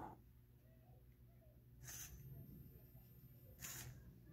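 Near silence: faint room tone with a low hum, broken by two short, soft hissing puffs, one about two seconds in and one near the end.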